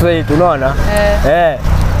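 Conversational speech over a steady low rumble of road traffic.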